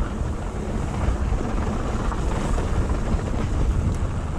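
Steady wind rushing over a handlebar-mounted action camera's microphone as a mountain bike descends a dry dirt trail, a heavy low rumble mixed with the tyres rolling over the ground.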